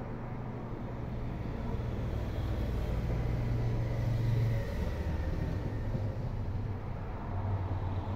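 Cars passing on a road: a low engine hum swells to its loudest about four seconds in and eases off, and another car comes up near the end, over a steady haze of road noise.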